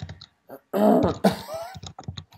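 A person clearing their throat with a rough, loud burst about a second in.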